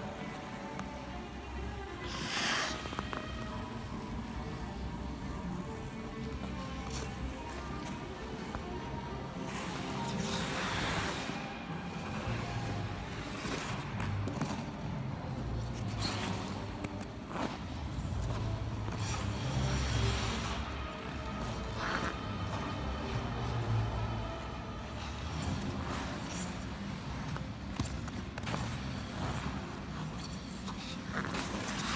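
Music playing over an ice rink's sound system, picked up by a phone, with several short scrapes of figure skate blades on the ice.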